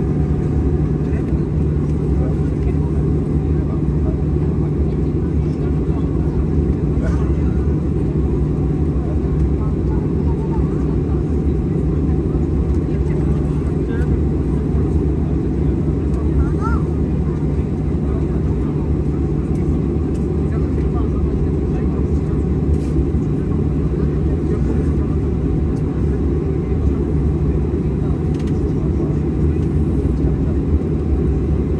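Steady low rumble of an airliner's jet engines at low taxi power, heard inside the passenger cabin.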